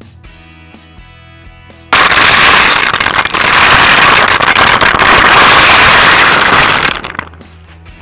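Shelled field corn poured from a bag, the kernels clattering down onto the pile and onto a camera set on the ground. It comes in suddenly about two seconds in, very loud and dense, as a rush of rattling impacts, and stops abruptly about five seconds later. Background guitar music plays before and after it.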